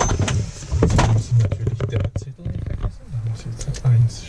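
Indistinct, low-pitched male speech in short broken bits, with a few scattered clicks.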